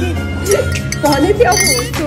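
Metal teaspoon clinking against a drinking glass as coffee is stirred, over background music with a singing voice.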